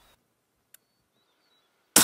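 Near silence with one faint click, then a single loud rifle shot from a scoped hunting rifle goes off right at the very end.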